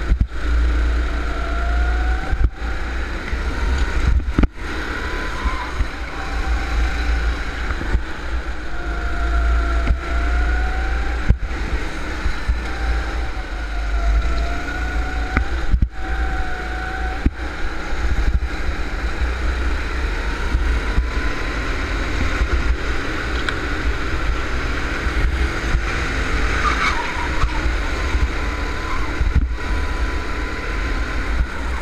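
Go-kart engine heard from on board, its pitch rising and falling as the kart accelerates out of and brakes into the corners, with heavy wind rumble on the microphone.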